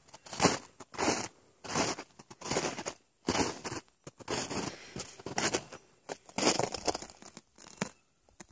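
Footsteps crunching through snow at a steady walking pace, about one step every 0.7 seconds.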